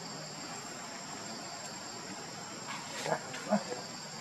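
Steady insect chorus, a high even hiss with a thin steady whine on top. A few short calls break in about three seconds in.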